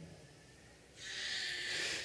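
Near silence for about a second, then a soft hiss of a man drawing breath close to the microphone, lasting just over a second before he speaks again.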